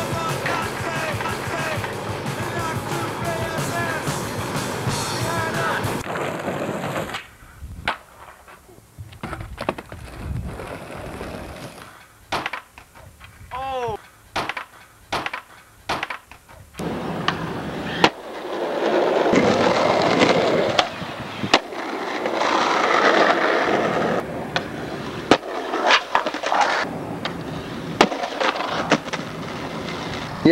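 Music for the first six seconds or so, then skateboard sounds: scattered sharp clacks of the board hitting the ground, and a stretch of wheels rolling on pavement about two-thirds of the way through.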